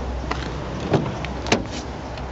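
Front door of a Honda Jazz being opened: a few sharp clicks from the handle and latch, the loudest about a second and a half in, over a low rumble.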